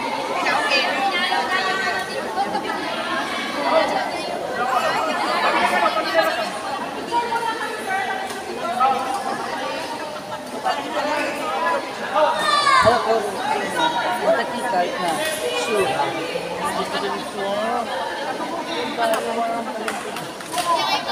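Many people chattering at once, overlapping voices filling a large indoor sports hall.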